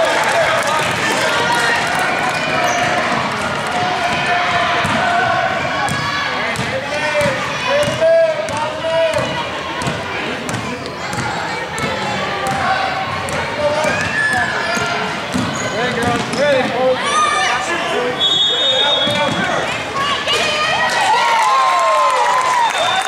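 A basketball being dribbled on a hardwood gym floor, with short knocks throughout, under a steady mix of spectators' and players' voices calling out.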